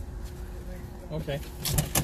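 A car's engine idling with a steady low rumble, heard from inside the cabin, with a few short clicks near the end.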